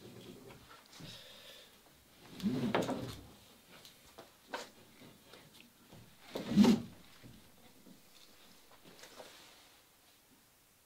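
Wooden wherry hull shifting and coming free from its building mold as it is lifted: two louder creaks or knocks about two and a half and six and a half seconds in, with a few faint clicks between.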